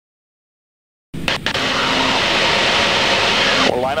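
Silence for about a second, then the steady noise of an Extra 300L aerobatic airplane in flight cuts in suddenly: engine and airflow as heard in the cockpit. A man's voice begins near the end.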